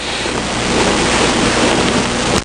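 A steady rushing noise that swells over about the first second and then holds.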